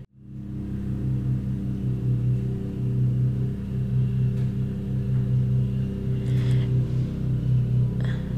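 Walk-behind petrol lawn scarifier with its small engine running steadily: a low drone with a slight throb.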